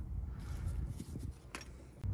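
Faint handling noise of parts and tools, with one sharp click about one and a half seconds in, over a low steady rumble; the sound fades out near the end.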